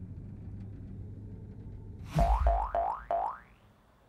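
Cartoon sound effect over a steady low rumble: about halfway through, a low thump followed by four quick rising boing-like tones, each about a quarter second apart.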